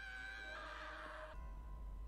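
Faint, high held note from the anime's soundtrack, fading and then cutting off about a second and a half in. A faint low hum remains after it.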